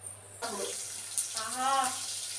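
Kitchen tap running into a sink, the water coming on suddenly about half a second in and then flowing steadily.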